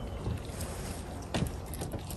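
An eastern chipmunk handling and picking up sunflower seeds on a wooden table: faint ticks and rustles of the shells, with one sharp click about one and a half seconds in, over a steady low rumble.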